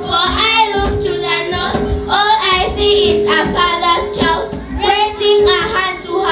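A song sung by children's voices over a steady instrumental backing.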